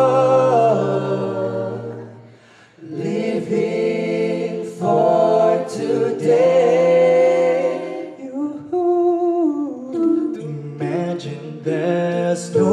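A small a cappella vocal group singing in close harmony: a held chord fades into a short break about two seconds in, then the voices come back in together and carry on with moving chords.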